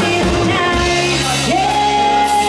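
Live rock-pop cover band playing: a female lead singer over electric guitars, bass and drums. Her voice slides up into a long held high note near the end.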